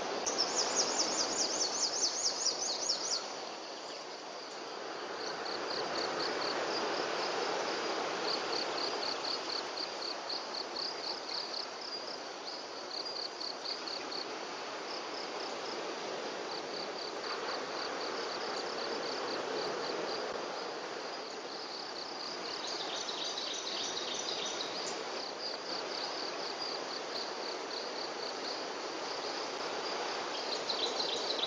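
Insects chirping in rapid, evenly pulsed high trills that run on without break, with a louder trill in the first three seconds and another a little past the middle, over a steady outdoor background hiss.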